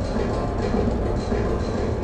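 Steady din of a large exhibition hall, a low rumble with music playing underneath.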